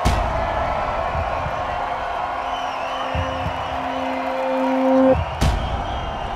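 Sound-designed boxing film soundtrack: a crowd murmuring under a sharp hit at the start, a held low tone that swells and stops abruptly about five seconds in, then a second heavy hit.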